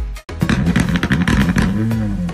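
After a brief dropout, a turbocharged WRC rally car engine revs in short, uneven blips with crackling, under electronic dance music.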